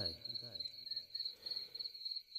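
Crickets chirping: a steady, high, evenly pulsing trill.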